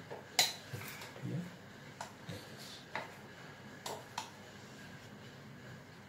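A spoon clicking and scraping against a bowl as cut fruit is mixed: a handful of light, irregular clicks over the first four seconds, the sharpest about half a second in.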